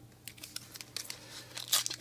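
Foil wrapper of a 2014 Panini Prizm baseball card pack crinkling and crackling in the hands as it is worked open, in a run of sharp irregular crackles that grow loudest near the end.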